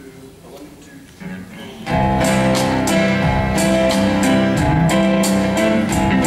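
Quiet for about two seconds, then the instrumental intro of a country song comes in: strummed acoustic guitar with a backing band, at a steady beat.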